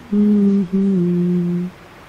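A man humming a tune close to the microphone: two long held notes, the second a little lower, stopping well before the end.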